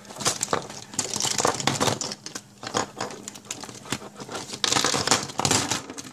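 Pens, markers and other plastic stationery shaken out of a fabric pencil case onto a desk, with a run of irregular clatters, clicks and rustles of the case. The loudest burst comes about two-thirds of the way in.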